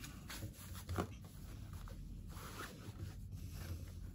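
Faint rustling and rubbing of slippery, silky fabric being worked by hand as a sewn fabric tube is pulled inside out, with a light tap about a second in.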